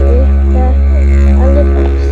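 Background music: a didgeridoo playing a deep, steady drone, with its overtones wavering up and down above it.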